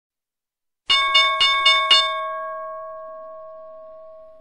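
A bell struck five times in quick succession, about four strikes a second, then ringing on with one clear tone and slowly fading.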